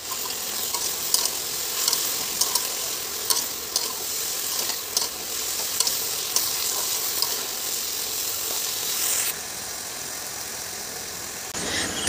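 Shredded potatoes and sliced onions sizzling in oil in a kadai, with a metal spatula scraping and clicking against the pan as they are stirred. About nine seconds in the scraping stops and a softer, steady sizzle remains.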